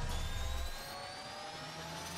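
Synthesized intro riser: an airy hiss with several tones gliding steadily upward, building tension. A deep rumble left from the previous hit fades out under it less than a second in.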